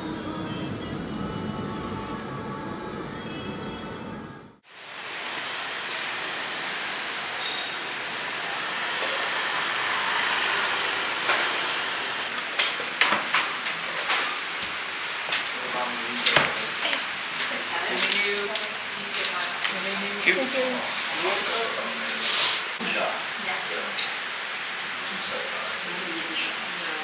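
Background music that cuts off sharply about four and a half seconds in. After that comes the hubbub of a busy restaurant: voices chattering over a steady room noise, with many sharp clicks and knocks.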